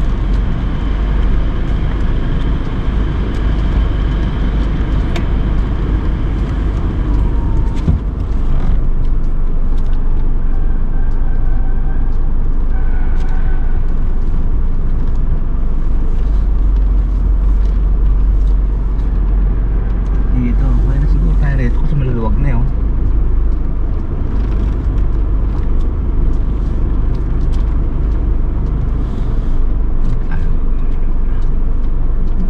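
Car driving slowly, a steady low rumble of engine and tyres heard from inside the cabin. About twenty seconds in, a short wavering pitched sound lasts two or three seconds.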